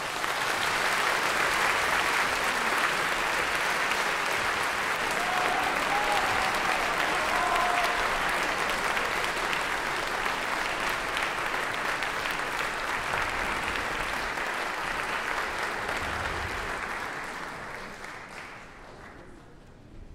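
Concert audience applauding at the close of a live chamber-music performance: steady clapping that dies away near the end.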